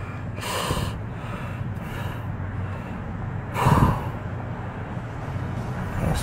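A man gasping and breathing hard in pain from a leg muscle cramp, with two loud breaths, one about half a second in and one near four seconds in, over a low steady rumble.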